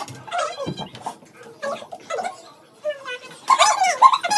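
Several people talking and exclaiming, with a loud, high-pitched exclamation about three and a half seconds in.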